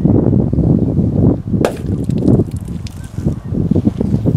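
Wind buffeting the microphone: a loud, uneven low rumble, with a light click about one and a half seconds in.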